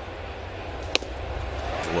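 One sharp pop about a second in, a pitched fastball smacking into the catcher's leather mitt, over steady ballpark crowd noise.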